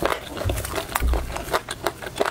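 Close-miked eating of crispy fried chicken: crackling, wet chewing and mouth sounds with a quick string of crunchy clicks, and two low thumps about half a second and a second in.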